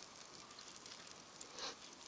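Faint crackle and hiss of an oak and charcoal fire in a Weber kettle grill as it is fanned by waving the lid, with a soft whoosh near the end.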